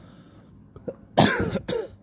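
A man coughs: a sudden, loud double burst a little past a second in.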